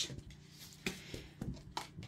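Faint rustling and a few light clicks from a styrofoam ball being pressed down into fluffy pink basket filler.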